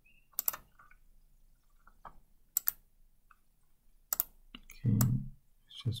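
Scattered computer keyboard keystrokes: a handful of short, sharp clicks, some in quick pairs, spread a second or two apart with quiet between them.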